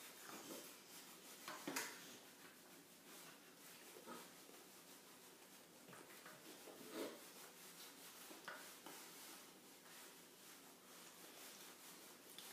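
Near silence in a small room, with a few faint clicks and scrapes of plastic spoons in plastic dessert pots, the clearest about two seconds in and again about seven seconds in.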